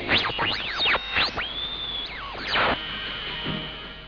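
Medium-wave audion (regenerative receiver) oscillating with its feedback set too high: heterodyne whistles glide rapidly up and down as the tuning sweeps across stations. From about a second and a half in, it settles into a steady high whistle, broken by a short burst of noise, before a fading high whistle.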